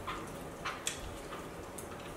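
Pringles potato crisps crackling in short, sharp clicks, about five in two seconds, as they are taken from the can and eaten.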